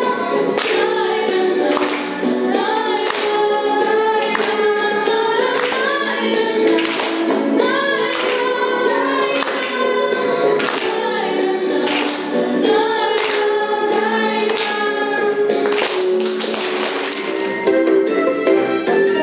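A small group of young female voices singing a song together, over an accompaniment with a steady beat.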